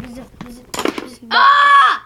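Small clacks and knocks from a tabletop foosball game, then, about one and a half seconds in, a child's voice lets out a loud, high, held note.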